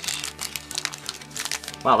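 Foil Pokémon booster pack wrapper crinkling and tearing as it is pulled open by hand, opening very easily. Background music plays underneath.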